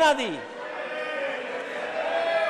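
A man's speaking voice ends a word with a drawn-out slide down in pitch, which stops about half a second in. After that a steady background tone holds at an even level with no words.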